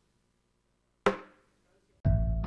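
A single sharp, wooden-sounding knock about a second in, ringing out briefly after near silence.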